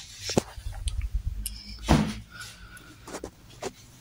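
Handling noise from a phone being moved about: a string of clicks and knocks over a low rumble, with a louder thump about two seconds in.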